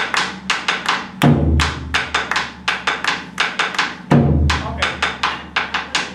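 Tambora, the Colombian double-headed bass drum, played alone with sticks in the cumbia pattern: a quick run of dry wooden clicks of paliteo on the shell, about four or five a second. A deep stroke on the drumhead comes twice, about three seconds apart, marking the accented beat of the pattern.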